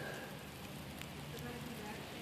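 Faint, steady crackling hiss with a few light ticks from molten black-powder residue still smouldering on a charred wooden board after a burn test.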